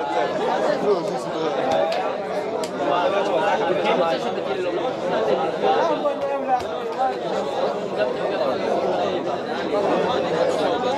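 The din of a beit midrash study hall: many men's voices overlapping as they study Torah aloud in pairs, a steady, dense mass of talk in which no single voice stands out, with a few faint clicks.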